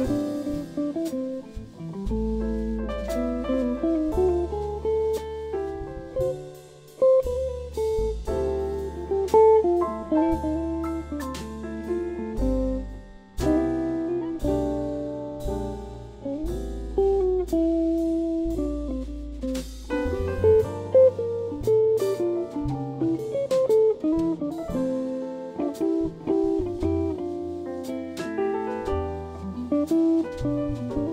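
A live jazz quartet playing: grand piano, hollow-body electric guitar, double bass and drum kit with cymbals. The bass holds long low notes under the melody.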